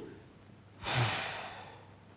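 A person's single heavy sigh, a breathy exhale about a second in that fades away within under a second.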